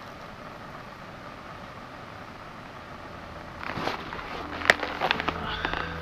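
A man urinating onto grass and dirt: a steady splashing hiss. About halfway through come a few sharp clicks and rustles, and music with low held notes fades in near the end.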